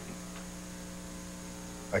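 Steady electrical mains hum with a faint hiss beneath it. A man's voice begins at the very end.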